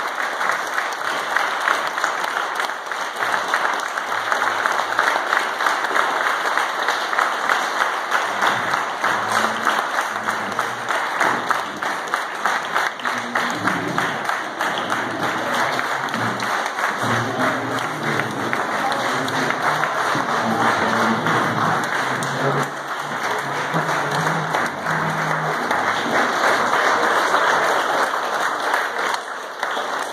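Crowd applauding continuously and loudly, with a rise near the end. From about eight seconds in, music with slow, held notes plays beneath the clapping.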